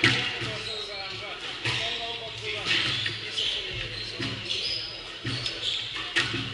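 Squash rally: the ball struck by racquets and hitting the court walls in sharp smacks, roughly one a second, echoing in the court.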